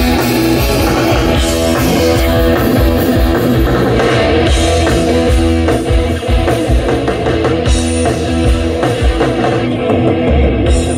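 Live rock band playing loudly: amplified electric guitars, bass guitar and drum kit.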